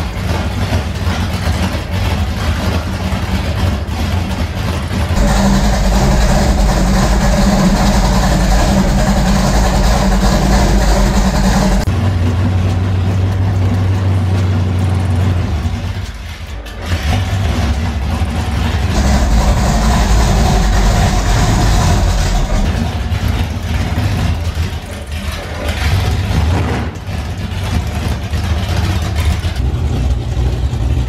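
Freshly installed pickup truck engine on new EFI, running steadily. It is held at a raised speed for about seven seconds starting five seconds in, and again for about three seconds later, with a brief dip between.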